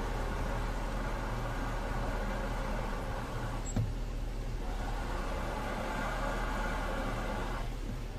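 Car engine idling with a high-pitched whir from a worn clutch release (throw-out) bearing while the clutch pedal is held down, the noise the mechanics confirm as a failing release bearing. The whir fades about three seconds in as the pedal is let up, with a click, comes back about a second later when the pedal is pressed again, and stops shortly before the end.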